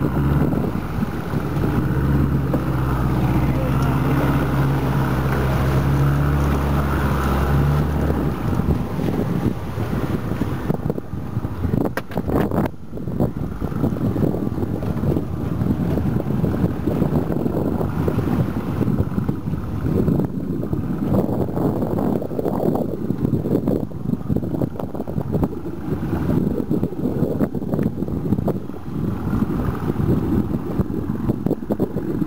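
A boat engine running steadily, cutting off about eight seconds in. After it stops, wind buffets the microphone.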